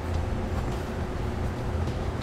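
Steady low rumble of background noise, with a few faint light clicks.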